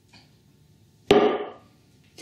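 One sharp knock about a second in, with a short ringing tail: kitchenware knocking against a plastic mixing bowl of biscuit dough.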